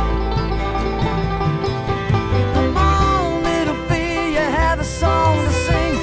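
Live country/bluegrass band playing an instrumental passage: a fiddle carries a sliding melody over strummed acoustic guitars, banjo and a steady upright-bass line.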